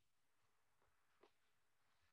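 Near silence, with one faint click a little over a second in.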